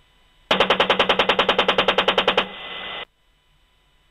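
AH-64D Apache's 30 mm M230 chain gun firing a single burst of about twenty rounds, roughly ten shots a second for two seconds, starting about half a second in. A short steady hiss follows the burst and cuts off suddenly.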